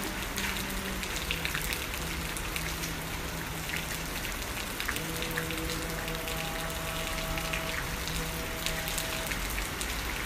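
Steady rainfall with many separate drops striking close by. A few held musical notes come in about halfway.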